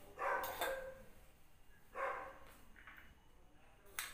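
A dog barking in the background, a few short barks: two close together just after the start and another about two seconds in.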